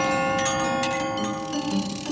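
A clock chime struck once, a bell-like tone that rings on and slowly fades, with light ticks underneath, set in spooky music.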